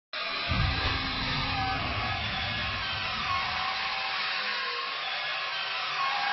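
Intro music over a steady hiss, with a low rumble in the first couple of seconds.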